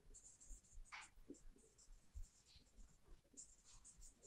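Faint squeaks and short strokes of a marker writing on a whiteboard, with one slightly stronger stroke about a second in.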